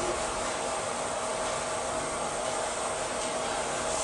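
Steady, even fan-like hiss of background room noise, unbroken and with no distinct strokes or knocks.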